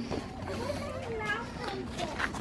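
Faint background voices of children and adults talking, with no one speaking up close.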